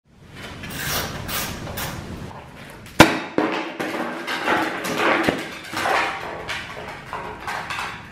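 Sharp knocks and rustling as a person moves on the floor beside a parked motorcycle. A single loud knock comes about three seconds in, with a few lighter knocks after it.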